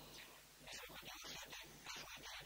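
A man's voice giving a lecture, thin and hissy, with a short pause near the start before he speaks on.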